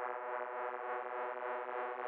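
Music: a sustained synthesizer chord held steady and unchanging, with no beat, at the opening of a hip-hop track.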